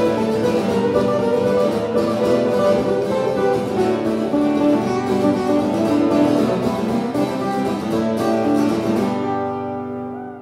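Acoustic guitar strummed steadily in the instrumental close of a live country song, fading out near the end.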